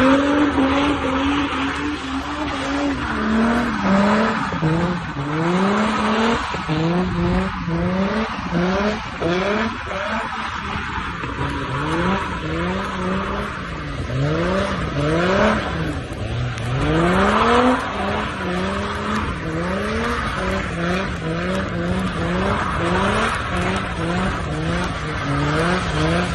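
Car engine revving up and down over and over, its pitch climbing and dropping in quick repeated rises, over a steady hiss of rain and wet road.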